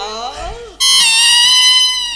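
A man's voice trails off, then less than a second in a single sustained instrumental note from the live stage accompaniment sounds suddenly and holds steady, slowly fading.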